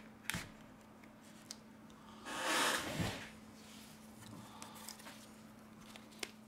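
Glass back cover of a Sony Xperia XZ Premium being lifted away from its cut adhesive by hand: a light click near the start, then a short rasping peel about two seconds in that ends in a soft knock, over a faint steady hum.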